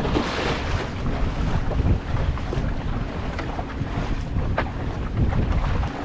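Wind buffeting the microphone over the steady wash of water along the hull of a small wooden sailing dinghy under sail.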